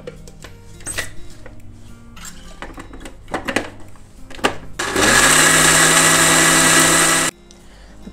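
An electric mixer grinder rated 1000 W is switched on, whines up to speed and runs loudly for about two and a half seconds, grinding grated coconut and curd into a paste, then cuts off suddenly. Before it come a few knocks as the steel jar and lid are handled and set on the base.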